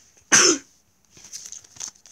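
A single loud cough, then the crackly rustle of a trading-card packet wrapper being handled from about a second in.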